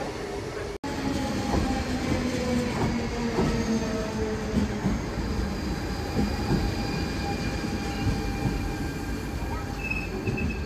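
DSB S-tog electric train rolling slowly along the platform, its motors whining in a tone that falls slightly over the first few seconds and its wheels clicking irregularly on the track. Just under a second in, the sound cuts abruptly to this from an earlier shot.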